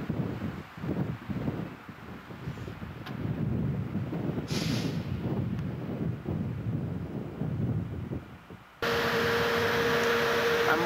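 Wind buffeting the camcorder microphone, an irregular gusting low rumble. Near the end it cuts off abruptly to a steady hum.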